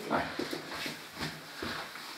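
Wet sponge rubbing across a chalkboard in a series of irregular wiping strokes as the board is erased.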